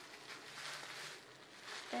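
Faint rustling of plastic bubble wrap around a laptop as it is handled.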